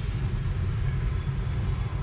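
A car running, heard from inside the cabin as a steady low rumble of engine and road noise.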